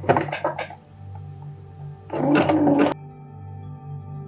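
Soft background music with a steady low drone, over which an electric sewing machine stitches in a short burst of under a second, about two seconds in, then stops abruptly. A few handling clicks and rustles come at the start.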